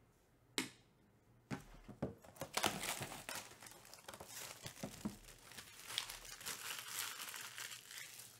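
A single sharp click, then dense crackling and tearing of plastic shrink wrap being pulled off a sealed Topps Chrome Black trading-card box.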